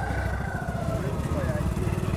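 A motor vehicle engine running close by, a fast and even low throb that holds steady, with faint background voices.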